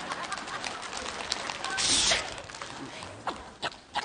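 Theatre audience laughing, with a short hiss-like burst about two seconds in and a few sharp clicks near the end.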